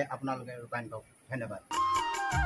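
A man speaking in short phrases, then music cuts in near the end with bright held tones over a quick ticking beat.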